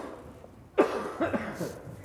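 A child's voice: a sudden loud vocal cry that falls in pitch about a second in, followed by a few quick, shorter falling syllables.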